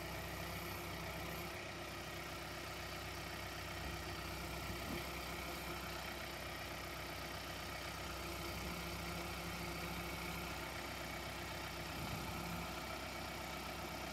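John Deere compact utility tractor's diesel engine running steadily at low revs while its front-loader bucket is tilted forward to dump sand.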